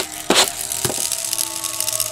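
Plastic Pikachu Happy Meal toy knocking and clicking on a tabletop as it is set down and rolled, two sharp clicks about a third of a second and a second in, over soft background music with held notes.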